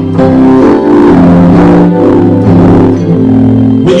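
Keyboard playing slow, sustained chords over a steady bass note, the chords changing about once a second.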